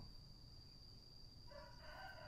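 Near silence with a faint steady high-pitched tone; about a second and a half in, a faint rooster crow begins and holds on a level pitch.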